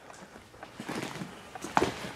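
Footsteps over debris on a gutted floor: irregular crunches and small knocks, with a sharper clatter near the end.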